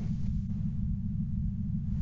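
A steady low rumble with nothing else on top of it.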